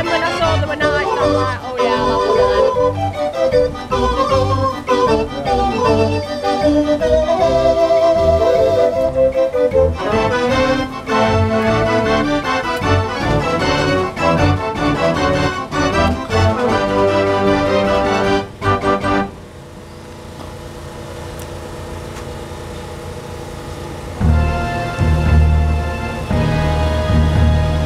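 Decap dance organ playing a lively tune; the tune ends about nineteen seconds in, leaving a lull of low background noise, and the next tune starts with a heavy bass beat about five seconds later.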